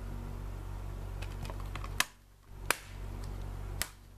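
A few sharp plastic clicks from a Blu-ray case being handled and snapped shut, the loudest about two seconds in and two more after it, over a steady low hum.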